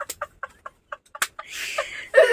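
Men's laughter tailing off into short gasping, wheezing bursts, with one sharp hand clap about a second in.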